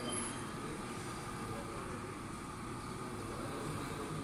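Small DC motor on a microprocessor trainer board running steadily, turning its slotted disc to the item position selected by button 6, over a steady room hum.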